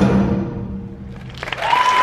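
A school concert band's final held chord rings out and dies away in the hall. About a second and a half in, audience applause breaks out with cheers.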